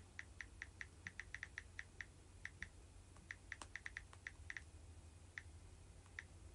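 Fingernails tapping on a smartphone touchscreen: quick, light clicks in irregular runs of several a second, with short pauses between runs.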